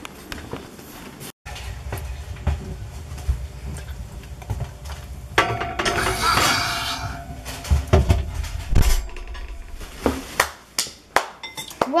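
Clinks and knocks of a mug and a metal oven rack as the mug goes into the oven and the oven door is handled, with a louder stretch of rushing noise in the middle.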